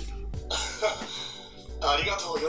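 Anime dialogue and background music playing quietly, the speech coming in short broken snatches.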